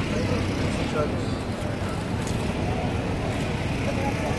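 Steady low rumble of road traffic with faint voices in the background.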